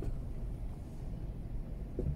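Low, steady cabin rumble of a Mazda3 driving slowly in traffic: engine and road noise heard from inside the car.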